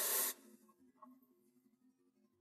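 A man's short, hissing breath, then near silence.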